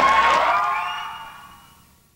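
Audience cheering and shouting after a live rock song, with a few held tones ringing, fading out over about two seconds.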